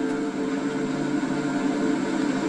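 Soft background music holding a sustained chord without a beat, heard from a television's speaker.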